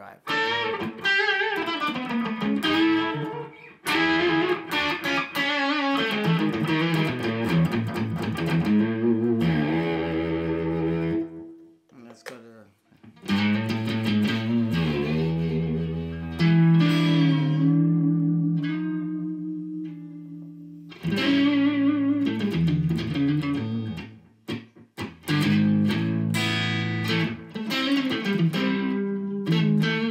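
Harley Benton ST20 HSS electric guitar played through an MXR Duke of Tone pedal set for a slight overdrive: riffs and chords in phrases. There is a short break about eleven seconds in, then chords that ring and fade before the playing picks up again.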